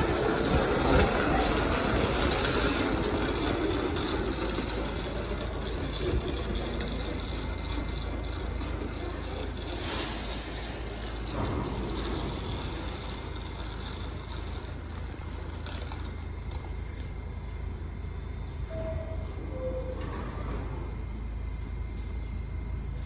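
New York City subway train noise: a train's rumble fades away over the first several seconds, leaving a steady low rumble from an R68 D train at the platform. A short two-note tone sounds about three seconds before the end.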